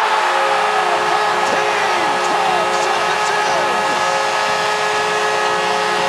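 Arena goal horn blaring one long steady chord, with a cheering crowd whooping and yelling under it, signalling a home-team goal.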